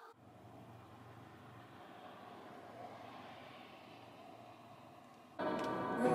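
A Cricut cutting machine makes a faint, steady mechanical whir as it works a sticker sheet. Music comes in abruptly near the end.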